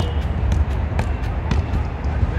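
A football being juggled: light knocks of the ball off the foot and the artificial turf, about two a second, over a steady low rumble.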